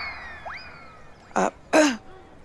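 Cartoon-style comedy sound effect: a quick rising whistle-like swoop that slowly slides back down, sounded twice, the second about half a second in, over a shocked reaction. Near the end come two short vocal sounds.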